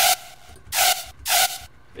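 Three short, hissy stabs of a hard trap synth patch in Serum, a bright white-noise layer over a steady pitched tone. They are played with the Hyper/Dimension effect switched off, without the space and doubled, delayed width it adds.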